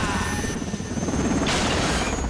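Film sound of a UH-60 Black Hawk helicopter going down, its rotor chop and engine running in a dense rumble. About one and a half seconds in, a louder, noisier surge comes in as it crashes.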